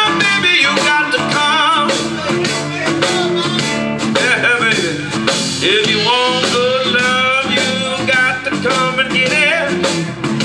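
Live blues band playing, with electric guitar, bass and drums and a wavering lead melody riding on top.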